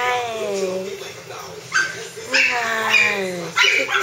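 A Pomeranian whining and yipping, with sharp yips about two seconds in and near the end, mixed with a person's high-pitched voice talking to it.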